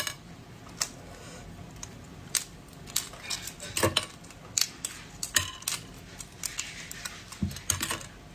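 Thick, hard dark-green shell of a large boiled egg being cracked and picked off by fingers: irregular sharp clicks and small crackles, with louder snaps about four seconds in and near the end.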